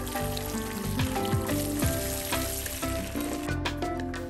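Water poured onto a potted marigold, splashing through its leaves into the wet soil of the pot, with background music playing throughout. The splashing stops about three and a half seconds in.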